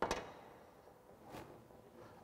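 A sharp knock with a short ringing tail, then a fainter knock about a second and a half later, as a power drill and tools are handled on a workbench.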